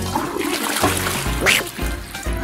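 Toilet flushing after its wall-mounted push-plate is pressed: a rush of running water that goes on steadily.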